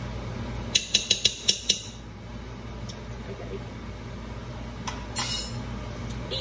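A metal spoon knocking against a stainless steel pressure-cooker pot: a quick run of about six sharp, ringing clinks about a second in, then a short scraping noise near the end.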